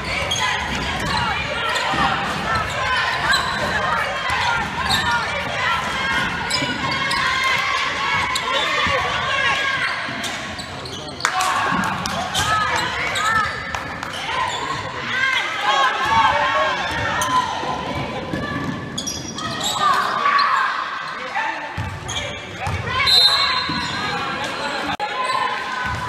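Basketball game sounds in a gym: a ball bouncing on the hardwood floor, sneakers squeaking as players cut and run, and voices calling out on the court.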